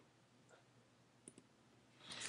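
Near silence, with two faint computer mouse clicks, about half a second and a second and a quarter in.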